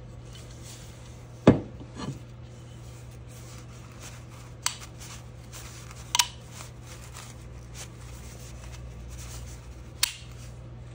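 Metal fixture parts handled on a wooden workbench: a sharp knock about one and a half seconds in, a lighter one just after, then a couple of light clicks, over a steady low hum.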